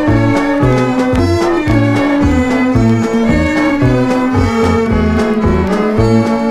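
Instrumental passage of Malay gambus orchestra music: a melody line over a bass and a steady beat of about two strokes a second.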